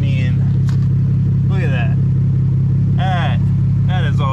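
Ford Taurus SHO's twin-turbo 3.5-litre EcoBoost V6 idling steadily just after startup, heard at the tailpipes through a new custom stainless rear X-pipe exhaust. The low exhaust note stays even throughout.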